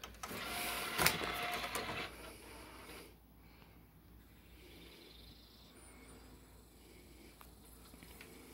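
Samsung DVD player's motorised disc tray closing: a mechanical whirr with a click about a second in, stopping about two seconds in. A faint steady hum follows.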